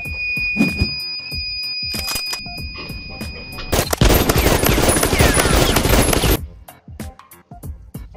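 A steady electronic alarm tone sounds over background music for the first few seconds. Then comes about two and a half seconds of dense, rapid gunfire, a machine-gun sound effect, which cuts off suddenly about six seconds in.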